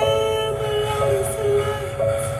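Crystal singing bowls ringing: several overlapping sustained tones held in a steady chord over a low hum, with a fresh tone joining about a second in.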